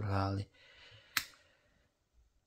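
A man's voice trailing off in the first half second, then a single sharp click a little over a second in.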